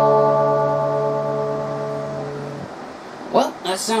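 A chord on an electric guitar, played through a homemade valve amplifier and a small speaker, rings out and slowly fades, dying away about two and a half seconds in.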